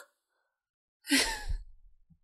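A person sighing once into the microphone about a second in, a short breathy exhale.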